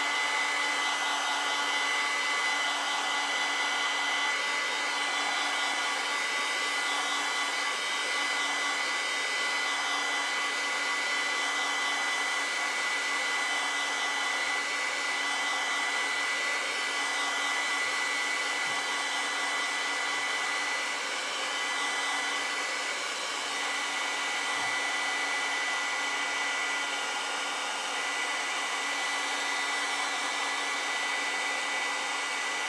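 Handheld blow dryer running steadily, a constant fan hiss with a high whine, drying wet watercolour paint on paper.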